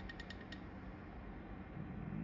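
A few quick, faint clicks from a resin printer's build plate being handled and shaken by a gloved hand, about five in the first half second, then only faint room noise.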